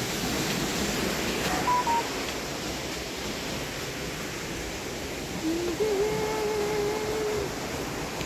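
Steady rushing of a fast mountain river. Two brief high beep-like tones sound just under two seconds in, and a single long, level tone is held for nearly two seconds near the end.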